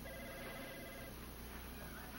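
Telephone ringing faintly, one ring stopping about a second in.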